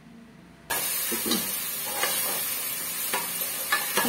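Onions and tomatoes sizzling in hot oil in an aluminium pressure cooker as a metal slotted spatula stirs and scrapes them against the pan. The sizzle cuts in abruptly a little under a second in and then runs on steadily, with scrapes of the spatula.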